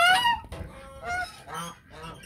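Domestic geese honking: a loud honk right at the start, then two shorter calls about a second and a second and a half in.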